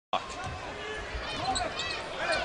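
Basketball being dribbled on a hardwood court, a few thuds, over arena crowd noise and voices.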